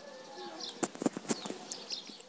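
Faint birds calling in the background, with short high chirps, curving call notes and a few sharp clicks about a second in.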